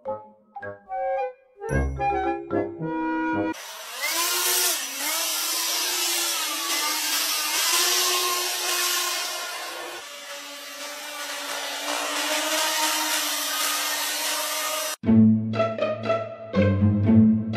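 A few seconds of music, then the loud, steady engine roar of a one-person jetpack in flight, with a constant whining tone under it. The roar stops abruptly near the end and music comes back.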